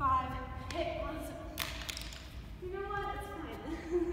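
A woman's voice in long, held, sung-out notes, as when counting or humming dance counts. A single thud of a foot on the wooden gym floor comes about a second and a half in.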